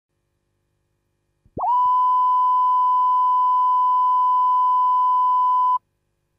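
Line-up test tone that runs with the colour-bar pattern at the head of an analogue video tape. After a faint click it swoops briefly in pitch, then holds one steady high tone for about four seconds and cuts off sharply.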